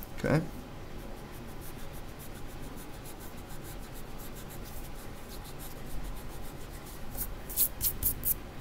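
Wooden pencil scratching on graph paper in quick, even strokes as lines are drawn along a wooden ruler, with a few louder scrapes near the end.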